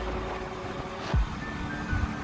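Background music with steady held tones, over low traffic and engine rumble. There is a single knock a little after a second in.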